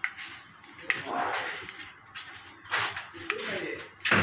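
A plastic piping bag being squeezed, with whipped cream squishing out through a large metal nozzle: a few short, soft rustling squelches. A brief murmured voice comes near the end.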